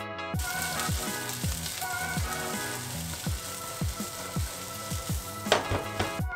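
Sliced vegetables (red onion, broccoli, courgette) sizzling in a hot frying pan, starting about half a second in. Background music with a steady beat plays underneath.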